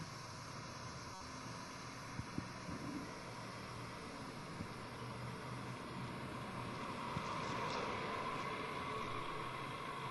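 Steady background hiss and outdoor ambience with a faint low hum, a few faint clicks about two seconds in, and a slight rise in level in the second half.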